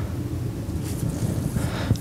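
Steady low rumbling background noise with no distinct event, like air movement or noise on the microphone.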